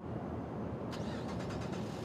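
Steady hum of road traffic, with a few faint ticks about a second in.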